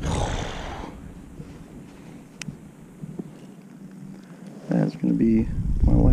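Handling noise as a freshly caught crappie is held and unhooked on the ice: a rustle of jacket and hands at the start, a single faint click, then a short wordless voice sound near the end as low wind rumble on the microphone rises.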